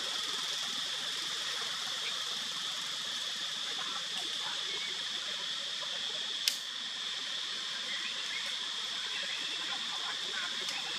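Steady outdoor ambience: an even hiss with a constant high-pitched drone. One sharp click comes about six and a half seconds in.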